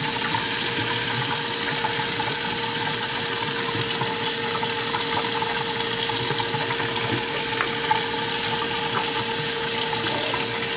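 Kitchen faucet running steadily into a stainless-steel sink as paste-covered hands are rubbed and rinsed under the stream, with a steady hum underneath.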